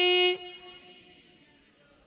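A woman's voice holding a long, steady sung note of a devotional chant line. It stops about a third of a second in and fades away into quiet room tone.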